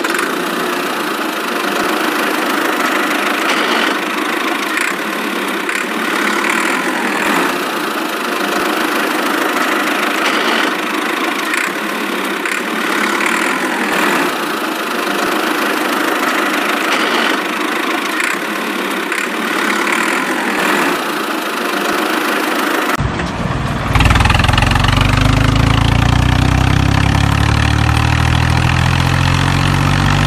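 Engine running steadily. About 23 seconds in it cuts abruptly to a deeper engine sound whose pitch slowly rises.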